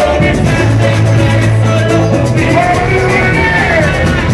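Loud live band music played through a concert PA, with a male vocalist on a handheld microphone over a steady heavy bass. A sung line slides down in pitch near the end.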